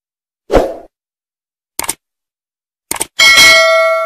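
Subscribe-button animation sound effects: a dull thump, then a few sharp mouse-like clicks, then a bright bell chime that is the loudest sound and rings on as it fades.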